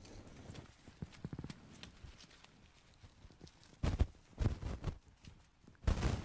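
Cattail leaves and stalks rustling and brushing as a tall stalk is grabbed and handled, with a quick run of small ticks about a second and a half in and several dull knocks in the second half.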